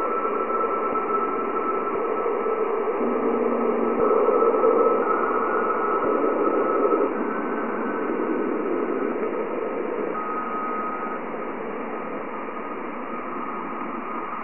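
Plasma wave signals from Jupiter's ionosphere, recorded by NASA's Juno Waves instrument and slowed about 60 times into hearing range: a steady hiss with brief, nearly pure tones around 1 kHz that step from one pitch to another. The tones follow a scale set by the electron density as the spacecraft descends into denser plasma.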